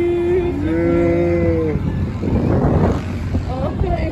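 People on a fairground ride letting out long, drawn-out yells: one held cry at the start, then two voices together at different pitches for about a second, followed by a rush of noise.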